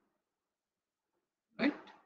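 Silence, then a man says one short word near the end.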